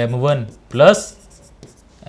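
Pen writing on the surface of an interactive display board, with a man's voice over roughly the first second.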